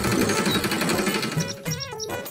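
Cartoon sound effect of an auto-rickshaw's engine rattling as it drives by, under background music, with a short warbling tone near the end.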